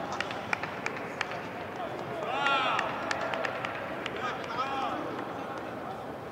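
Football training-pitch sound: players' voices with two short, rising-and-falling shouted calls, one about two and a half seconds in and one near the end, over a steady scatter of sharp knocks from balls being kicked.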